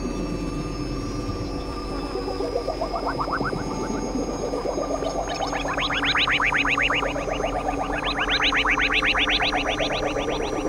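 Experimental synthesizer music: steady drone tones, joined about two and a half seconds in by a rapid pulsing sequence of about eight short upward-sliding notes a second, which grows louder and higher from about halfway through.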